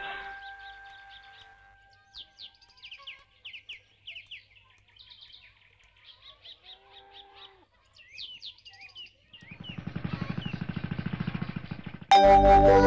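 Background music fades out, leaving small birds chirping in short, quick calls over quiet outdoor ambience. Near the end a fast, rhythmic buzzing pulse rises.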